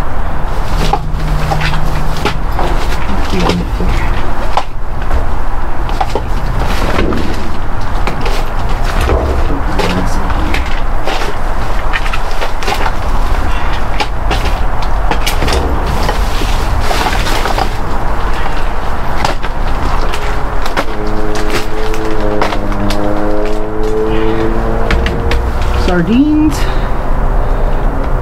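Canned goods and small food boxes being picked up and packed into a bag inside a dumpster: repeated clinks and knocks of cans and rustling of plastic bags and cardboard over a steady low rumble. About 21 seconds in, a droning hum joins and rises slightly in pitch.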